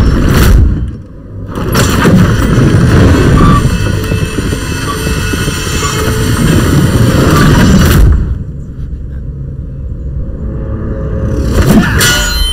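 Film sound effect of a loud, deep rumble with booms, as iron spikes rise out of the ground around the arena platform. The rumble eases off about eight seconds in, and a sharp hit comes right at the end.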